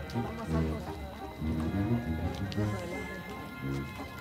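Voices singing a slow melody of held notes that step up and down in pitch, as sung in a candlelit procession.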